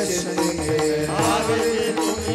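Devotional Varkari chant: several voices sing a repeated refrain together, with small hand cymbals (taal) keeping a steady beat.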